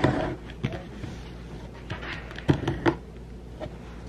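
Hands handling a cardboard shipping box: a short rustle and brush against the cardboard at the start, then a few light knocks and taps as the box is shifted.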